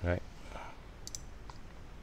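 A few light computer mouse clicks, the clearest a quick pair about a second in.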